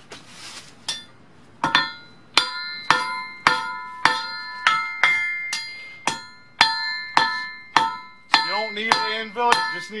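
Hand hammer forging a red-hot O1 tool-steel rod on a thick steel-disc anvil, flattening it out. The blows start about a second in and come about two a second, and each one rings with a clear metallic tone from the steel.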